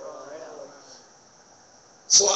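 A pause in the speech: a faint voice trails off in the first second, then low, steady room tone.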